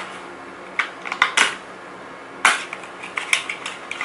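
A small paperboard product box handled in the hands: a cluster of short scrapes and clicks about a second in, a sharper click near the middle, and a few lighter taps near the end.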